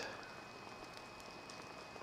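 Faint, steady background hiss of a quiet outdoor scene, with a few soft ticks.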